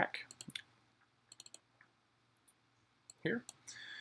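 A few light computer mouse clicks in small clusters, over faint room tone.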